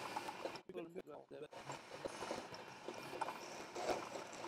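Faint scraping of a hand-held graver cutting a small steel part as it turns in a lathe collet, with a few light ticks.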